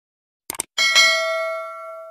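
Subscribe-button animation sound effect: a quick double mouse click, then a notification bell rings with a bright strike and fades slowly.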